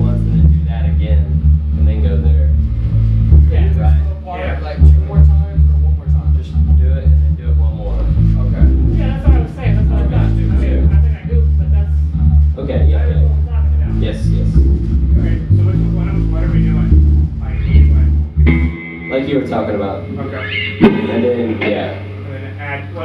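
Electric bass guitar through an amp playing a run of low notes, which stops about 19 seconds in; an electric guitar then rings out chords near the end.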